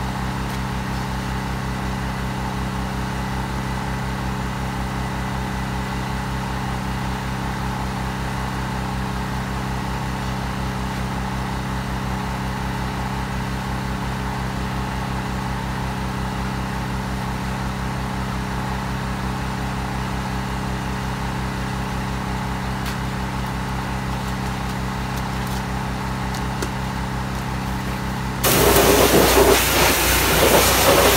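An engine running steadily at idle, a constant low hum with a fine rapid pulse. Near the end a much louder rushing noise cuts in suddenly.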